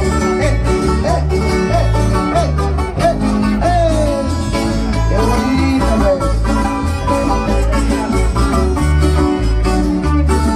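Live band playing dance music, with a heavy bass and a steady beat.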